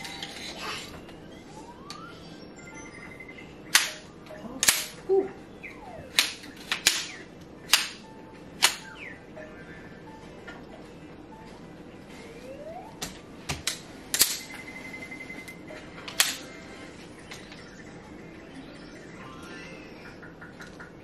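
Aluminium poles of a folding camping chair frame clacking as their ends are pushed into the metal joints, a run of sharp clicks in two clusters, one from about four to nine seconds in and another around thirteen to sixteen seconds in.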